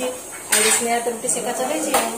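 Steel dishes and kitchen utensils clattering in brief bursts as food is handled.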